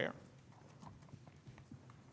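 Faint footsteps, a few soft irregular knocks, of a person walking up to the pulpit.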